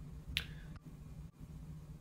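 A pause in speech: faint steady room hum, with one short click about a third of a second in.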